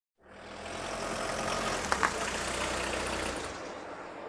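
A motor vehicle's engine running, fading in at the start and easing off about three and a half seconds in. Two sharp clicks come about two seconds in.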